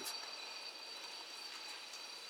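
Room tone in a pause between speech: a steady, faint hiss with a few thin high-pitched tones held throughout.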